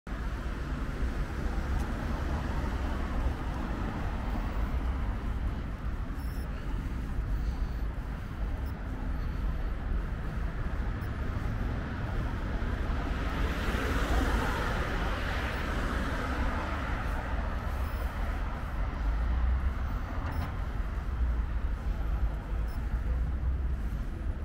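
Roadside traffic ambience: a steady low rumble, with one car passing by about halfway through, swelling and fading over a few seconds.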